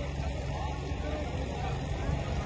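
A pause in a microphone speech, filled by a steady low hum and rumble with a faint hiss.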